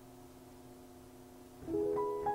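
Ampico reproducing piano starting to play a chimes roll: a first chord of several notes is struck near the end and rings on, after a faint steady hum.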